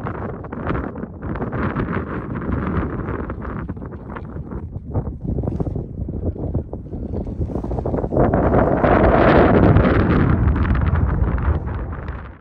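Wind buffeting the microphone in uneven gusts, with a deep rumble that grows louder about eight seconds in.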